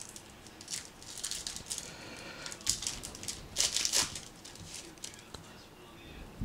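A trading-card pack wrapper being torn open and crinkled by hand, in an irregular run of crackling rustles that is loudest about two-thirds of the way in.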